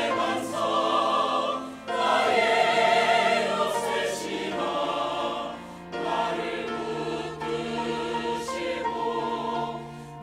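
Mixed choir of men and women singing a Korean sacred anthem in Korean with piano accompaniment. The singing comes in phrases, with short breaks about two and six seconds in.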